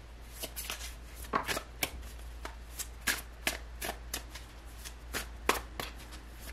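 A deck of tarot cards being shuffled by hand: a quick, irregular run of short card slaps and flicks, a few each second.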